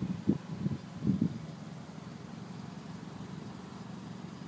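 A steady low hum, with a few short, brief sounds in the first second and a half.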